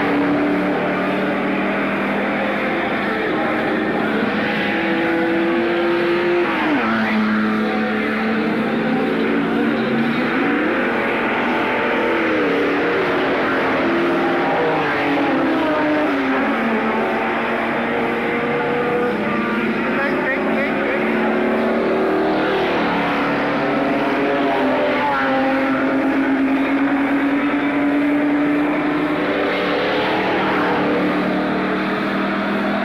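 Several stock car engines racing together, their notes rising and falling and crossing each other as the cars rev and pass.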